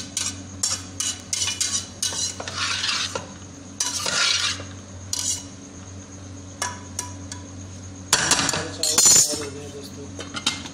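Metal spatula scraping and stirring boiled rice in an aluminium saucepan, a series of short strokes against the pan, with a louder metallic clatter near the end.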